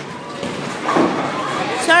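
Bowling-alley background noise, with a short burst of voice about a second in and a high voice saying "sorry" near the end.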